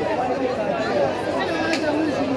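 Several voices talking over one another amid crowd chatter.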